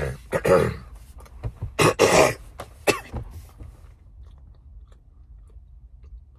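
A man coughs and clears his throat three or four times in loud, short bursts over the first three seconds while eating a snack. After that there are only faint chewing clicks over a low hum.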